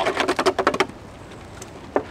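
Thin plastic gallon milk jug being handled, a rapid run of crackling clicks for about the first second, then a single knock near the end.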